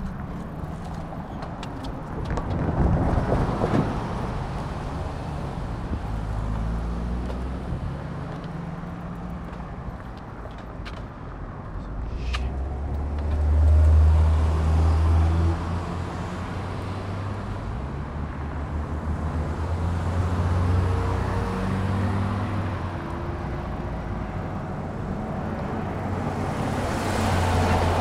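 Road traffic: cars and trucks passing close by one after another, their engine rumble and tyre noise swelling and fading, loudest about halfway through and again near the end.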